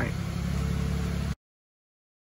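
A 2005 Ford Sport Trac's 4.0-litre V6 idling steadily, heard from inside the cab. The sound cuts off suddenly a little over a second in.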